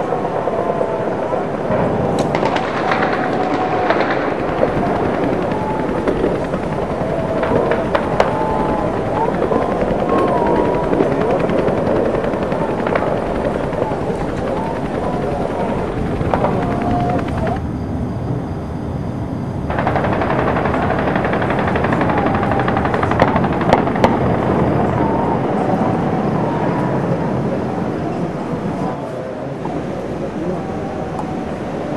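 Dense, continuous automatic gunfire from many weapons at once, a crackle of overlapping shots and bursts with no real pause.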